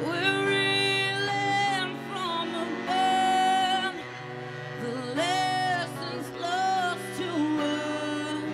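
Live acoustic song: a woman singing phrases of long held notes, accompanied by acoustic guitar and bowed cello.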